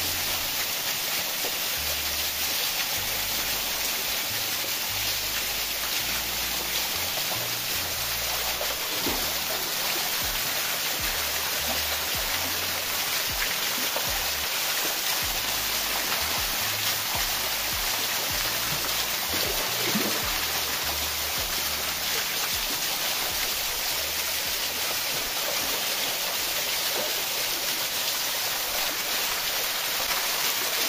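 A small waterfall pouring down a rock face in a steady rush of falling water. Beneath it runs background music with a low bass line that moves in short steps.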